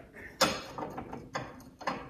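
Small china finger bowls being stacked and set down on a cabinet shelf among other china: a few sharp, light clinks and knocks, the loudest near the start.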